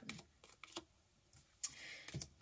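Tarot cards being handled and laid down on a wooden table: a few faint taps, then a soft sliding brush near the end.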